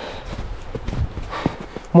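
A few irregular short knocks and thuds over a low outdoor background.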